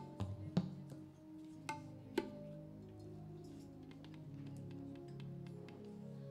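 Soft instrumental background music: held low notes that move from one pitch to the next, with a few sharp percussive strikes in the first couple of seconds.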